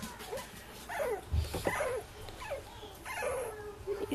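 Staffordshire bull terrier puppies whimpering: a string of short high squeaks that fall in pitch, with one longer drawn-out whine late on. A soft low bump a little over a second in.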